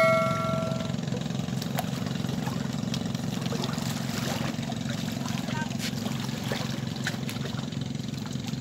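A steady, low engine drone with a fine pulsing beat. A bright electronic chime, the subscribe-button sound effect, rings out and fades within the first second.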